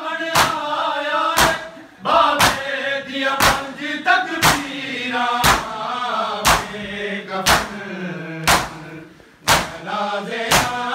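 A group of men chanting a noha, a mourning lament, in unison, with a loud collective chest-beat (matam) struck in time about once a second.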